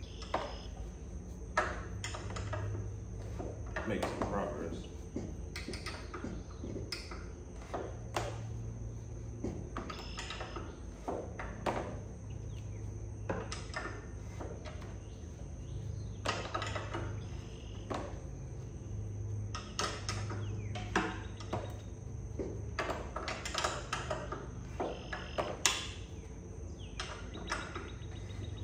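Irregular clinks, taps and scrapes of hand tools and metal parts while a carburetor is being fitted on a dirt bike's engine.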